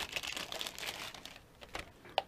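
A clear plastic bag crinkling as it is pulled off a handheld frequency counter, most busily in the first second and thinning out after.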